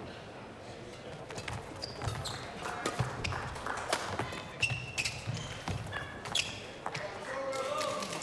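Badminton doubles rally: a string of sharp racket hits on the shuttlecock at an uneven pace, with short squeaks of players' shoes on the court floor, echoing in a large hall.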